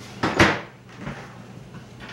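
A kitchen cupboard door shuts once with a sharp knock, about half a second in.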